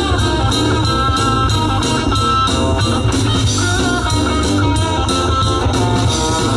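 Live rockabilly band playing an instrumental break: an electric guitar takes the lead over bass and a steady drum-kit beat with cymbals, and nobody sings.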